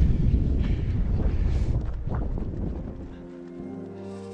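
Wind buffeting the microphone, loud for the first two to three seconds and then dying away. Soft music with long held notes fades in near the end.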